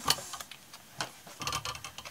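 Small craft scissors snipping around the edge of a paper circle: a few short, irregular snips.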